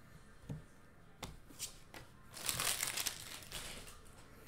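A few light clicks and snaps of trading cards being handled, then a foil card-pack wrapper crinkling for about a second and a half.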